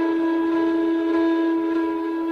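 Indian flute holding one long, steady note, reached after a short falling run.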